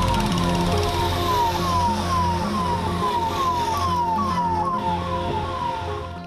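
Police siren sounding a rapidly repeated falling tone, about two to three sweeps a second, over a music bed with a stepping bass line.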